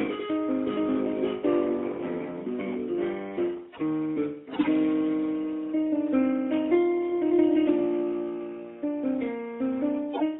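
Solo instrumental music: a single instrument plays chords and a melody, with short dips in loudness about four seconds in and again near the end.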